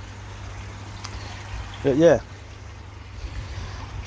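Water running steadily at the koi pond filters, with a low steady hum underneath.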